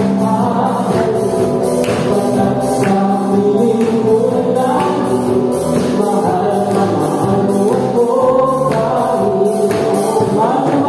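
Live worship band playing a gospel song: several voices singing together over acoustic guitar, electric bass, keyboard and drum kit, with a steady beat marked by cymbal strokes about twice a second.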